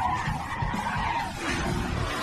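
Cartoon sound effect of car tyres squealing as a toy car spins its wheels on a launch ramp, over a rushing noise; the squeal is strongest in the first second or so.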